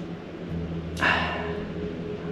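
A man's short breathy exhale about a second in, fading quickly, over a low steady hum.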